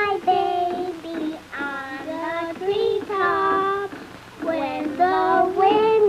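Children singing a melody in phrases of long held notes.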